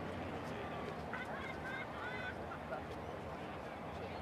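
A few short honking calls, like a bird's, from about a second in to just past the middle, over steady outdoor background noise.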